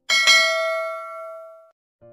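Notification-bell 'ding' sound effect of a subscribe-button animation: a bright bell struck twice in quick succession, ringing out and fading away over about a second and a half.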